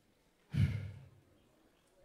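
A single short sigh, a heavy breath out, about half a second in, fading away within about half a second.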